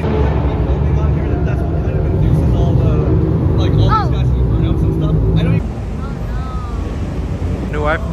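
Car engine running inside a parking garage, a low steady exhaust drone under people talking, until it stops abruptly about five and a half seconds in.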